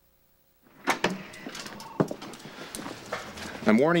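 A short silence, then a few sharp clicks and knocks over rustling as a brown paper takeout bag is carried in and handled. A man starts speaking near the end.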